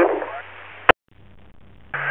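Two-way radio on a scanner between transmissions: a call fades into faint hiss, a sharp squelch click cuts the channel about a second in, then faint hiss returns.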